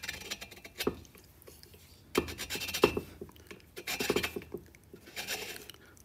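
Neway valve seat cutter turned by hand on its pilot, scraping around a valve seat in a few short, uneven strokes with small clicks: the first 45-degree cut, cleaning up the seat.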